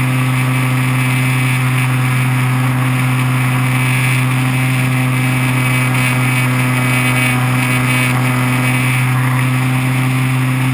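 Electric motor and propeller of a Parkzone T-28 Trojan RC plane running at wide-open throttle, heard from a camera mounted on the plane: a steady, even drone that holds one pitch throughout.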